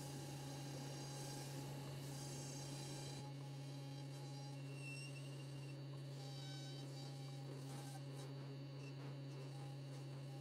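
Wood lathe running with a steady low hum and a faint high whine, while sandpaper is held against a small spinning maple finial.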